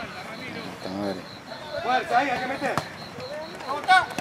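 Shouted calls from people at a youth football match, a few short phrases with gaps between them.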